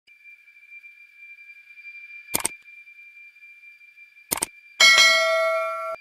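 Two short clicks about two seconds apart, then a bell ding that rings for about a second and fades. This is the sound effect of an animated subscribe-and-notification-bell overlay, over a faint steady high tone.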